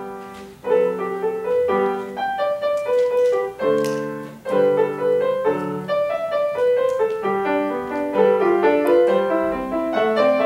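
Grand piano played solo: a steady flow of melody notes over lower chords, with no pauses.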